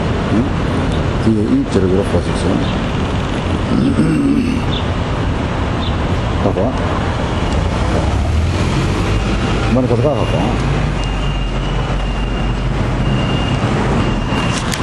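City street traffic noise, a steady rumble of passing vehicles, with brief snatches of people's voices over it.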